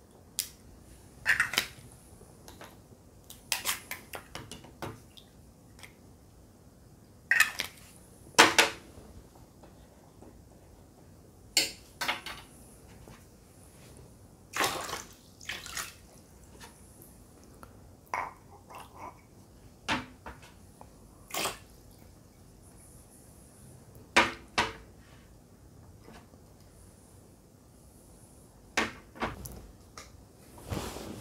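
Scattered clinks and knocks of small ceramic cups holding water, and a plastic pocket pH/TDS meter, being handled and set down on a tray. About a dozen short separate sounds, the loudest a pair about eight seconds in.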